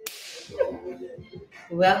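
A sudden sharp crack-like transition sound effect at the very start, with a hiss that fades over about half a second, then voices start talking.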